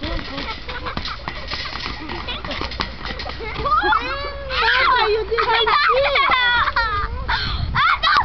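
Young children shrieking and laughing as they play. The first few seconds hold scattered scuffs and crunches of feet landing on wood chips, before high squeals take over about four seconds in.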